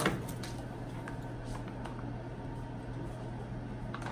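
Faint rustling of an MRE food pouch being handled and pulled open, over a steady low hum.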